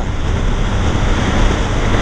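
Steady rush of wind on the microphone of a motorcycle riding at highway speed, with motorcycle and road noise mixed underneath.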